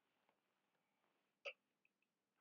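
Near silence: faint room tone, with one brief sharp click about one and a half seconds in and a fainter tick just before the end.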